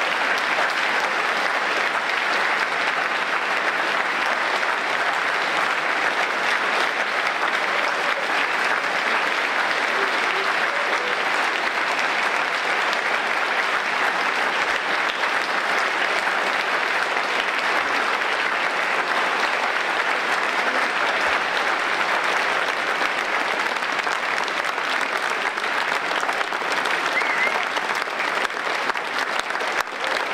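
A large audience applauding steadily for a long stretch. Near the end the applause starts to break up into separate claps.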